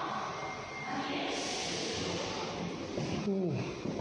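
Indoor room noise with faint, indistinct voices, and a brief voice-like sound falling in pitch about three seconds in.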